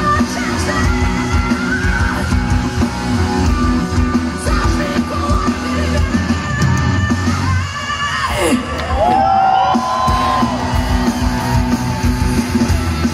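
Heavy rock band playing live through a festival PA: distorted guitars, bass and drums under a female lead singer's yelled vocals. About two-thirds of the way through, a long pitch glide sweeps downward, and then the voice holds a few high notes.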